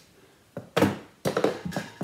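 A tennis ball striking a stainless steel pot and bouncing out onto a wooden floor: one sharp knock about three-quarters of a second in, then a few lighter knocks.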